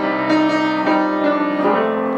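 Solo grand piano: chords and melody notes struck every few tenths of a second, each left ringing on under the next.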